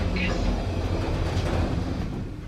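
Elevator car in motion: a steady low rumble.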